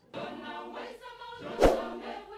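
Voices singing together like a choir, starting just after the speech stops, with a sharp hit about one and a half seconds in.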